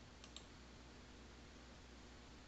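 Two faint, quick computer mouse clicks about a quarter of a second in, then near silence: room tone.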